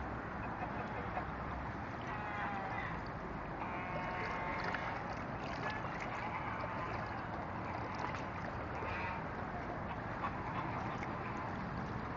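White domestic geese giving a few calls, the longest about four seconds in, over a steady background rumble.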